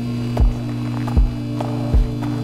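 Film score: a low, steady synth drone whose chord shifts at the start, under a slow, deep, heartbeat-like bass thump about four times every three seconds.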